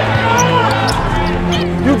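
Basketball game sound under background music: sneakers squeaking on the hardwood court and the ball being dribbled, over steady held bass notes that change about a second in.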